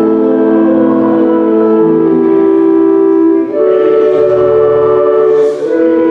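Church organ playing slow, sustained chords, the harmony changing about every two seconds.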